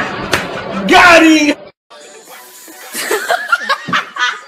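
A splash into a pool with loud noise and a person's loud yell, all cut off suddenly about a second and a half in. Then voices and laughter over music.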